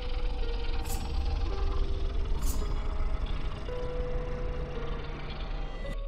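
Cartoon electric-shock sound effect: a steady low electrical drone with sharp zaps about a second in and again near two and a half seconds, over held notes of background music.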